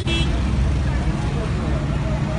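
Road traffic on a city street: cars driving past in a steady low rumble, with indistinct voices nearby.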